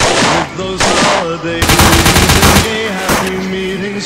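Bursts of automatic gunfire sound effects: four volleys, the third and longest lasting about a second in the middle.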